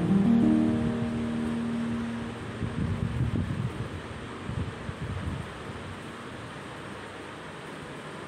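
Instrumental background music: held notes that die away about two seconds in, followed by a low, wash-like texture that settles into a quieter steady hiss.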